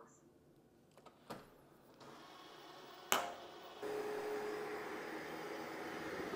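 Ecovacs Deebot T20 Omni robot vacuum starting up: a click, then a faint whir that builds as its suction fan spins up, and a sharp knock about three seconds in. From about four seconds in comes the louder steady whir of it vacuuming on carpet, with a faint humming tone.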